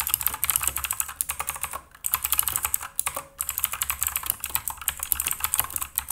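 Fast typing on a Redragon Visnu K561 mechanical keyboard with clicky Outemu Blue switches: a dense run of sharp key clicks, with two brief pauses about two and three seconds in.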